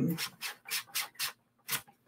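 Several short scrapes of a layered cardstock card rubbing against a paper trimmer's plastic guide as it is pushed through, to test whether the card is thin enough.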